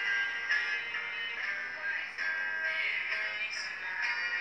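A young man singing to his own acoustic guitar, his voice carrying a continuous melody over the guitar. The sound is thin, with almost no bass.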